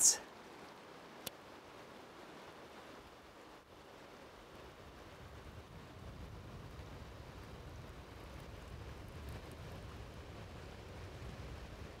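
Faint, steady rush of shallow river current. A low rumble builds from about halfway through, and there is a single small click about a second in.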